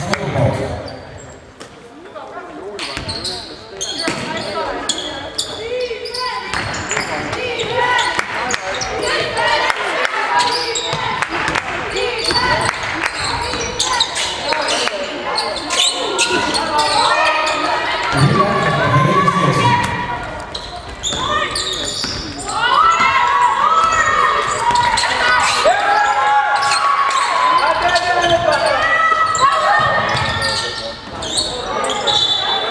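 Basketball game on a hardwood court: a ball bouncing and many short knocks of play, with players' and spectators' voices calling out, echoing in a large sports hall.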